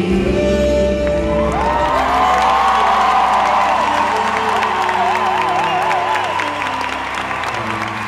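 Live band's closing chord ringing out while the audience breaks into applause and cheering. A long, wavering high note glides over the top from about a second and a half in.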